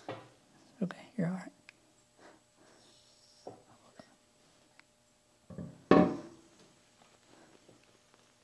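A single loud metallic knock about six seconds in: the heavy cast-iron saddle of a DoAll milling machine setting down onto the knee as an engine hoist lowers it slowly, with faint low voices.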